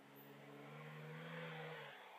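Engine of a small van approaching, faint, its note rising slightly in pitch and growing louder, then easing off just before the end.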